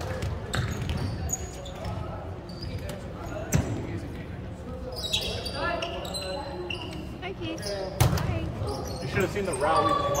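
Sharp smacks of a volleyball being played in an echoing gym, three of them a few seconds apart, with players' short shouted calls between them.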